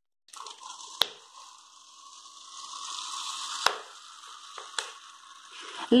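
Alcohol vinegar poured from a plastic bottle into a plastic measuring cup: a steady stream of liquid running into the cup, with a few sharp clicks along the way.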